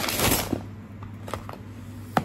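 Brown paper mailer rustling and crinkling as it is handled and opened, a burst of rustling at the start followed by a few light clicks.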